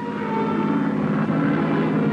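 Steady drone of propeller aircraft engines, a dense held hum with several layered tones.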